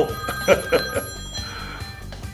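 Mobile phone ringing, its ringtone playing in short repeated notes.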